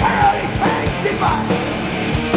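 Live heavy metal band playing: a male lead singer belting a high vocal line that bends in pitch, over distorted guitars, bass and steadily hit drums.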